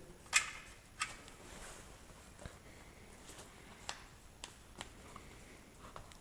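Canvas tractor-cab tarp being pressed and fitted by hand onto its frame: a few light clicks and soft rustles. The loudest click comes about a third of a second in.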